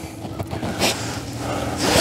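A man breathing between sentences: a short breath about a second in and another just before the end, over a faint steady hum.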